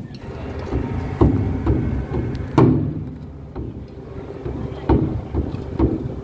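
Japanese taiko drums struck with wooden sticks by an ensemble: deep strokes in an uneven pattern, with a few heavy accents about a second or so apart and lighter beats between them.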